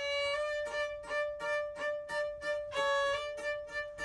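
Violin starting a quick tune: a steady held note sounds underneath while shorter notes come in a fast, even run above it.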